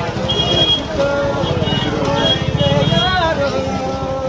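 Crowd voices in a busy market street, over the low running of a motor scooter's engine close by that fades after about three seconds.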